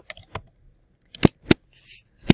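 Keystrokes on a computer keyboard: a few separate key clicks, two of them close together a little after a second in.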